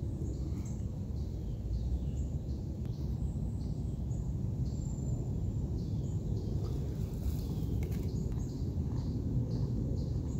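Small birds chirping in short repeated calls over a steady low outdoor rumble, with a few faint clicks near the end.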